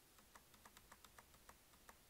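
Faint, irregular clicking of computer keys, about a dozen light clicks over two seconds, in otherwise near silence.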